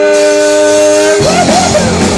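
Ska punk band playing live. A held chord rings steadily for about a second, then the drums and the full band come in together.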